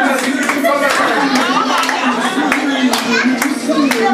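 A group of people clapping their hands together in time, a steady beat of roughly two to three claps a second, with voices over it.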